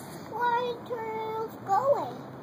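A young child's high voice holding two long, steady notes, then a short rising-and-falling note near the end, in a sing-song way.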